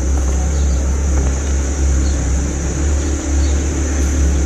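Steady low rumble with a constant high-pitched hiss over it, with no distinct events.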